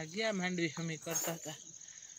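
Insects trilling in one steady high-pitched band, with a woman speaking over it for the first second and a half.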